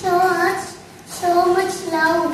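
A young girl singing two short held phrases in a high child's voice, with a brief pause between them.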